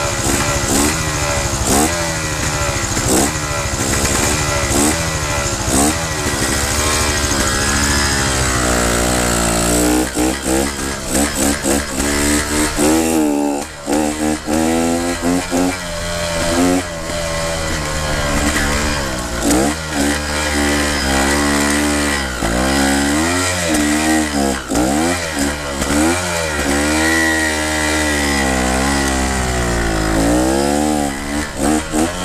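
A Fantic trial motorcycle engine revving in quick up-and-down blips, then held at high revs with further rises and falls as it is ridden. It runs fast because water got inside after the bike was drowned.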